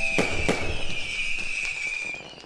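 Fireworks going off: two sharp bangs close together near the start, then a long crackle under a thin whistle that falls slowly in pitch.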